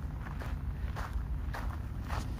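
Footsteps on a sandy gravel path, steady steps about two a second, with a low rumble underneath.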